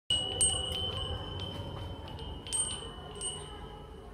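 Hanging wind chime of small bells set swinging by hand, its clappers striking about eight times. Each strike leaves a high ringing tone that carries on between strikes, with the loudest strikes near the start and about two and a half seconds in.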